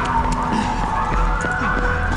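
A police siren wailing, its pitch rising slowly, over a low rumble.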